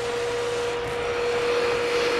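Vacuum cleaner running steadily, a constant rushing hiss with a steady whine.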